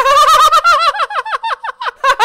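Ticking sound effect of an on-screen spinning prize wheel: a rapid run of short, pitched ticks that gradually slow as the wheel winds down.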